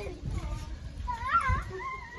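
A child's high-pitched squeal that wavers up and down, strongest for about a second near the end, over low thuds from children bouncing on a trampoline mat.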